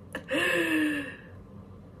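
A woman's brief laugh trailing off into one drawn-out, breathy, sighing vocal sound lasting under a second, its pitch falling slightly.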